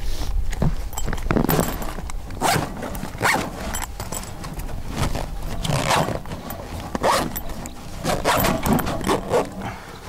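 Zipper on a fabric bag being dragged shut in a series of short, uneven rasping pulls that keep catching: the zip is partly frozen with ice and clogged with snow.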